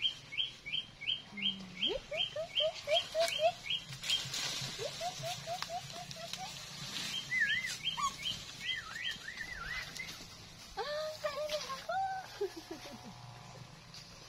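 Wild birds calling in the trees: a rapid run of short, high chirps, about four a second, for the first few seconds and again around seven to nine seconds in, with a lower run of short repeated notes between them.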